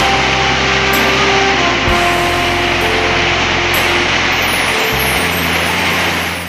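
Heavy rain falling in a steady, loud hiss, with background music of sustained notes playing over it.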